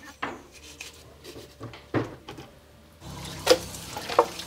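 Scattered knocks and clatters of a knife on a cutting board as a raw chicken is cut up, then raw chicken pieces going into an aluminium pot, with one sharp, loud knock about three and a half seconds in.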